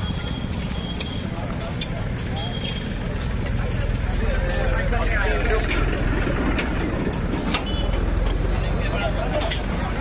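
Outdoor ambience of a steady low rumble that swells around the middle and eases near the end, with indistinct voices of people talking nearby.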